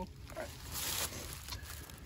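Rustling and handling noises of hands working on a deer carcass, loudest in a short rustle about a second in.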